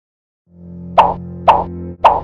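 Silence for about half a second, then a low, steady music bed starts, over which come short, sharp pop sound effects about half a second apart, the last right at the end.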